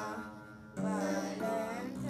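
Boys' voices chanting an Ethiopian Orthodox hymn in long held notes over the begena's low plucked strings; the chant pauses briefly just under a second in, then resumes.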